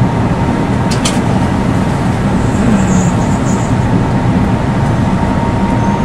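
Tour bus running and rolling slowly, heard from inside the cabin: a steady engine and road rumble, with a thin steady whine above it. A short sharp click sounds about a second in.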